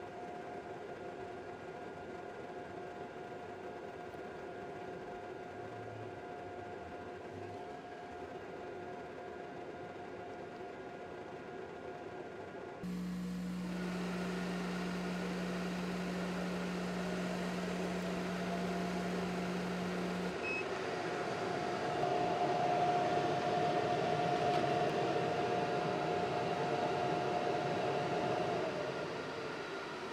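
Thunder Laser BOLT RF CO2 laser engraver running through an engrave on cast acrylic: a steady machine hum with a whine, which changes abruptly about thirteen seconds in and again about twenty seconds in, when a higher tone rises and holds until near the end.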